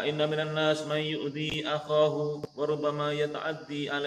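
A man's voice reciting Arabic in a level-pitched chant, held in long phrases with two brief breaks.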